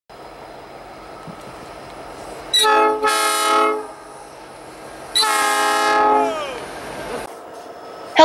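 Locomotive air horn sounding two long blasts. The second blast slides down in pitch as it ends.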